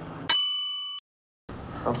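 A single bright bell-like ding, a transition sound effect at an edit, rings with several high clear tones and fades, then cuts off abruptly under a second later.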